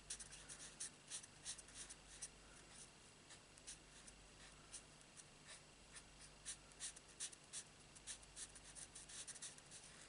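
Faint, scratchy short strokes of a Stampin' Blends alcohol marker nib colouring on stamped cardstock, coming in quick irregular runs.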